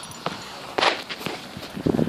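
Footsteps on a gravelly dirt path, a few irregular steps with the loudest about a second in.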